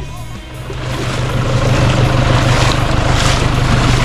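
Toyota Hilux 3.0 D-4D four-cylinder turbodiesel engine running as the ute drives up close, getting louder from about half a second in. Background music plays throughout.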